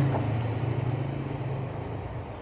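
Low steady drone of a passing motor vehicle, fading away over about a second and a half.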